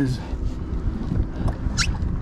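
Wind buffeting the microphone over open water: a steady low rumble with a few faint clicks, and a short hiss near the end.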